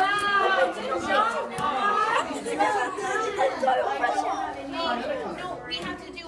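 Overlapping chatter of several voices, children's and adults', with no clear words.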